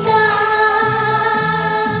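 A woman singing a Malay pop song live into a microphone through a PA, holding one long steady note over recorded accompaniment with a regular low beat.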